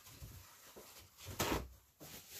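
Handling noises on a work table: low bumps, then one louder short clunk about one and a half seconds in.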